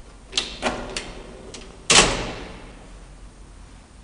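Elevator door of an old Graham Brothers lift: a few light clicks, then a loud slam about two seconds in that rings and dies away over about a second.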